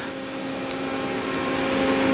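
A steady mechanical hum with a low tone over a hiss, slowly growing louder.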